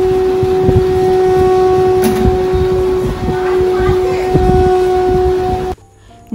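Conch shell (shankha) blown in one long, steady note, the ritual conch call of a Bengali ceremony, cutting off abruptly near the end. People's voices murmur underneath.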